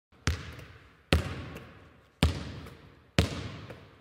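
A basketball bouncing on a hard floor four times, about a second apart, each bounce echoing away in a reverberant hall.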